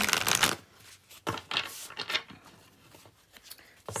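Oracle card deck being shuffled by hand: a loud rush of sliding, flicking cards in the first half second, then a few softer, scattered flicks.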